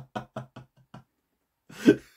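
A man laughing heartily in quick, evenly spaced bursts, about five a second, that fade out about a second in. He draws a breath near the end as the laugh picks up again.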